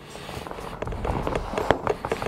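Coated fabric of a roll-top dry bag rustling and crackling with many small crinkles as its top is pressed and rolled down to squeeze the air out.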